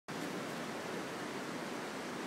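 Steady rush of water at a weir: an even, unbroken hiss.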